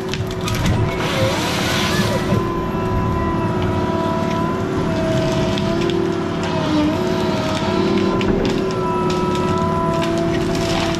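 Heavy forestry machine running steadily, its diesel engine rumbling under a hydraulic whine that wavers in pitch as it works, with occasional sharp cracks of wood.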